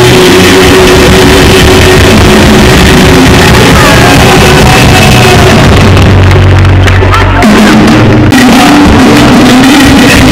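Loud live band music from a concert stage, with keyboards and a male singer's voice.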